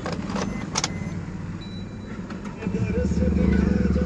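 Car keys clicking and jangling at the ignition, then about three seconds in the Maruti Suzuki Ertiga's starter cranks and the engine starts, on a newly programmed key that the immobiliser accepts.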